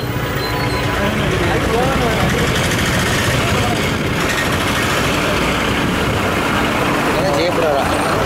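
Noisy town-street traffic: vehicle engines, among them a bus running close by, making a steady din, with passers-by talking.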